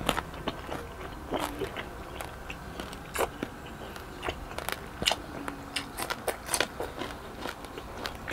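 A person chewing crunchy food close to a clip-on microphone: irregular crisp crunches and mouth clicks, sometimes several in quick succession.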